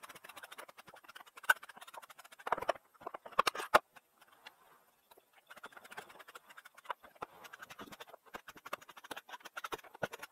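Rapid clicks, taps and knocks of hand-tool work on a camper trailer's door frame and siding, with a cluster of louder knocks about two to four seconds in.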